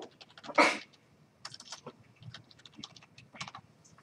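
Typing on a computer keyboard: a run of quick, irregular keystrokes. One brief, louder burst of noise comes about half a second in.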